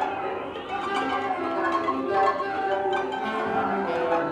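Large orchestra improvising freely: many sustained pitches overlap at once, with bowed strings and scattered plucked notes among them.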